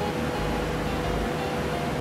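Steady whirring hum of an electric fan running, with a faint steady tone.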